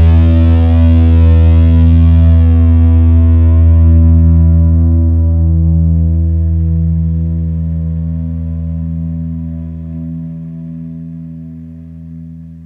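Outro music: a single distorted electric guitar chord held and ringing out, fading slowly over the second half.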